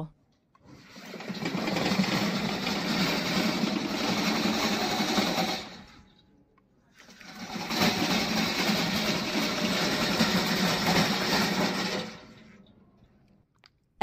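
Brushless electric drive motors and tracks of a Vigorun VTLM600 remote-control mowing tank running as it drives. There are two runs of about five seconds each, with a short pause between. Each builds up over about a second, holds steady, then dies away.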